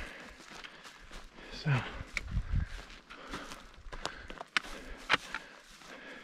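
Footsteps through dry grass and over dry ground: a handful of separate, uneven steps and crackles. There is a brief low rumble about two seconds in.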